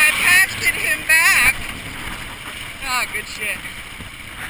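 KTM dirt bike engine revving, its pitch rising and falling several times with the throttle, loudest in the first second and a half and again near three seconds, then easing off.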